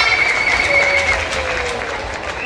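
Audience applauding, with a steady high whistle held over the clapping for about the first second.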